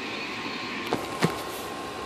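Two light clicks of wooden toy trains being handled on a wooden railway track, about a quarter-second apart near the middle, over a steady faint background hiss.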